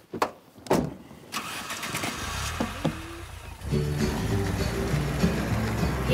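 A woman's short grunt of effort and a couple of knocks as she climbs into an open convertible, then the car's engine starts and runs. A song comes in about four seconds in and carries on over the engine.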